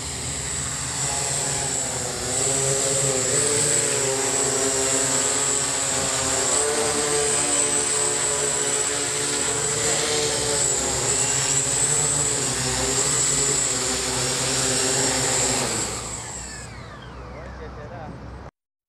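OFM GQuad 8 octacopter's eight electric motors and propellers whirring as it flies in close, a steady high whine over a drone whose pitch wavers up and down with throttle. About two seconds before the end it touches down and the sound drops as the motors slow.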